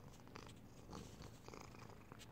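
Domestic cat purring softly right at the microphone, a steady low rumble, with a few brief faint rustles of fur or movement against the phone.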